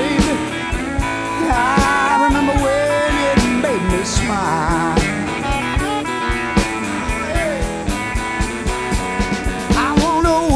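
Modern electric blues band playing an instrumental passage: bending lead lines, most likely electric guitar, over bass and a steady drum beat.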